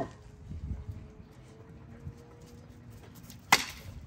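XL bully puppies scuffling and playing around a person's feet, giving faint knocks and rustles. A single sharp click comes near the end.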